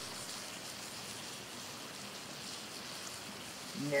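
Faint, steady hiss of light drizzle in misty weather.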